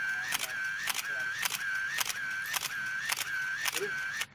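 DSLR camera shutter firing in a continuous burst, about four frames a second, each shot a sharp click with a whir between shots; it starts and stops abruptly.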